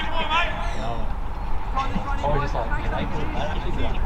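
Indistinct men's voices calling out on a football pitch, with no clear words, over a steady low rumble.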